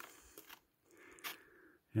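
Faint, sparse crunches and scrapes of footsteps on hard, crusty snow, with one sharper crunch a little past a second in.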